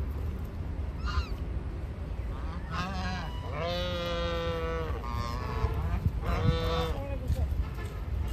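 Domestic geese honking: a short call about a second in, then a run of calls from about three seconds, the longest drawn out for over a second, over a steady low rumble.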